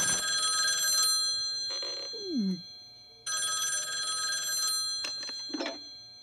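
Desk telephone ringing with a trilling bell, two rings of about a second and a half with a pause between. A short falling tone sounds between the rings, and a brief clunk comes near the end as the handset is lifted.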